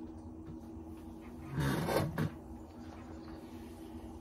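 A man drinking beer from a glass, with one short breathy burst, like a sigh or an exhale after the sip, about one and a half seconds in. A faint steady low hum sits underneath.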